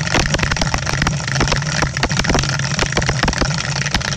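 Electric dice-rolling dome running: two dice rattling rapidly against the clear plastic dome over a steady motor hum.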